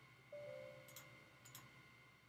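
Near silence with two faint computer-mouse clicks about a second and a half second apart, and a faint steady tone lasting about a second.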